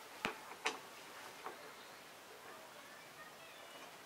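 Two sharp clicks in the first second and a fainter one about a second and a half in, from a screwdriver working a screw down into the panning rig's metal frame, then only faint room tone.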